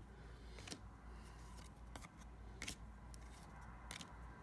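Faint handling of a stack of baseball trading cards: a few short, sharp clicks as cards are slid and flipped over one another by hand, over a low steady hum.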